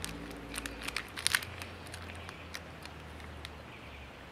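Soft scattered rustles and small clicks of hands working lettuce seedlings out of a plastic cell pack and pressing them into dry soil, busiest in the first second and a half, over a faint low hum.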